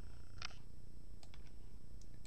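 A computer keyboard key struck once about half a second in, then a couple of fainter clicks, over a steady low hum.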